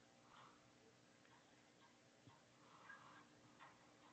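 Near silence with a few faint ticks and two soft puffs of noise, the longer one about three seconds in.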